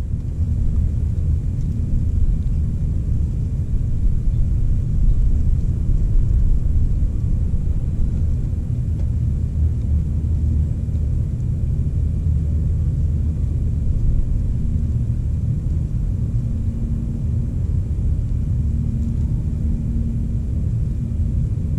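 Low, wavering rumble of wind buffeting a small camera's microphone, with a faint hum coming in near the end.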